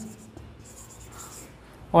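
Felt-tip marker writing on a whiteboard, a faint scratching of pen strokes as a word is written out.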